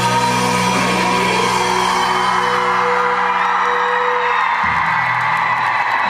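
Live pop-rock band with drums, guitars and keyboards playing loudly on stage, holding long sustained chords over a bass line that changes note about four and a half seconds in.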